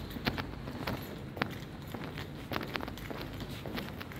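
Footsteps of a person walking at a steady pace on brick paving, a sharp step roughly twice a second.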